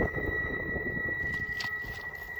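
Low wind rumble on the microphone, with a faint steady high-pitched whine underneath.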